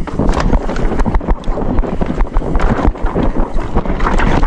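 Downhill mountain bike descending a dry dirt trail: knobbly tyres rolling over dirt and roots, with the bike clattering and knocking over bumps. Wind rumbles on the camera microphone throughout.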